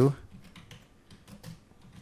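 Faint typing on a computer keyboard: a quick run of soft key clicks.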